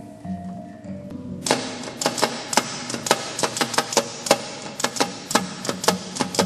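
A hanging gong's ringing tones die away, then about a second and a half in a fast percussion rhythm of sharp, ringing strikes begins and runs on over a steady low tone.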